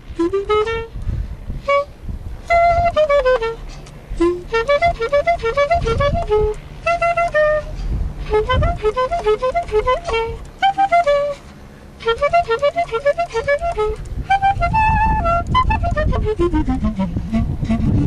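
Solo clarinet improvising a tune in traditional Swiss Ländler style: quick running figures and arpeggios in short phrases, with a long falling run into the low register near the end. Played at minus 7 °C, which the player says kept the reed from responding well. Wind rumbles on the microphone underneath.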